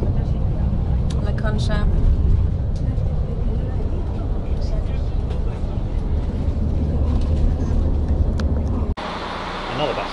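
Steady low engine and road rumble inside the cabin of a moving coach bus. Near the end it cuts suddenly to a quieter, even indoor hum.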